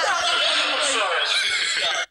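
Boys laughing loudly and high-pitched, without a break.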